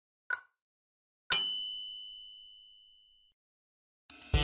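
Quiz timer sound effect: a last short tick, then about a second later a bright bell-like ding that rings away over about two seconds.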